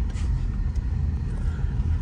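Steady low rumble of a Toyota SUV driving slowly on a dirt track, engine and tyre noise heard from inside the cabin.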